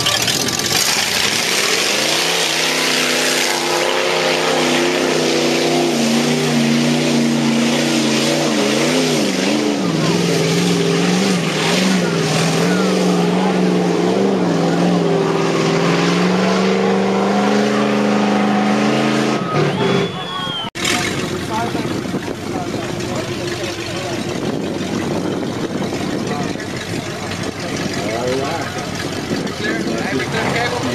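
A lifted pickup truck's engine pulling hard through a mud bog pit, its pitch rising and falling over and over as the driver works the throttle. It cuts off suddenly about two-thirds of the way through, after which there is a rougher steady engine sound mixed with people's voices.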